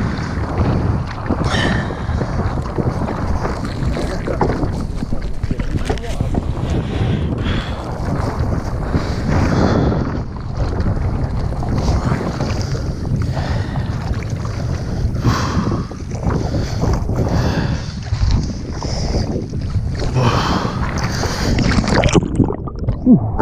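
Wind buffeting the microphone over choppy sea, with water slapping and splashing around a water skier waiting in the water with ski tips up.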